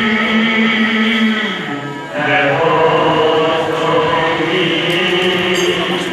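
Devotional chanting with music: long held sung notes that drop in pitch and break off briefly about two seconds in, then carry on.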